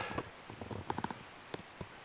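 Faint handling noise of the camera being moved and set in place: a few soft clicks and rubs, clustered around the middle.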